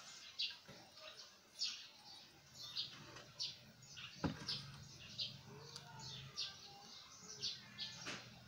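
A small bird chirping over and over, short high chirps coming roughly once a second, with one sharp click a little after four seconds in.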